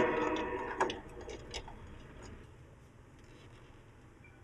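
The tail of the preceding sound dies away over the first second. A few faint, scattered clicks follow, then low room tone close to silence.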